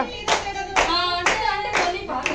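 A group of women clapping in time, four claps about half a second apart, while singing together.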